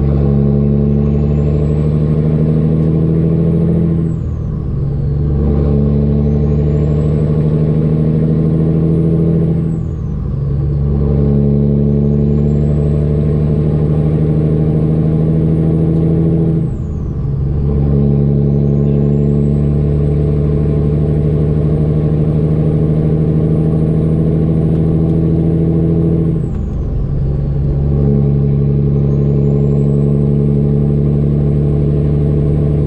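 Kenworth W900 semi truck's diesel engine heard from inside the cab, pulling steadily and upshifting through the manual gearbox. The engine note drops out briefly at each of four gear changes, about 4, 10, 17 and 26 seconds in. After each shift a high turbo whistle climbs as the engine pulls again, and it falls away just before the next shift.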